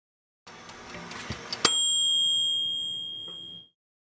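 Logo sting: a short run of clicks and rattles building up, then a single bright bell-like ding about one and a half seconds in that rings out, fading over about two seconds before it stops.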